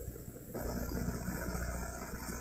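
Faint, steady low hum in a pause between spoken sentences.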